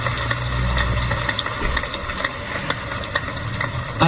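A large congregation clapping in a big hall: a dense patter of many hands with irregular sharp claps, and a low hum underneath that fades out a little under two seconds in.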